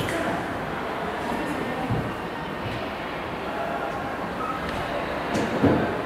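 Steady background noise in the room with a couple of faint knocks, one about two seconds in and one near the end.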